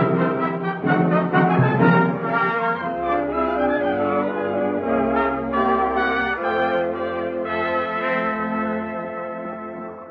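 Orchestral brass music bridge: trumpets, trombones and horns play held chords that move every second or so, then fade out near the end. It marks the close of one scene in a radio drama.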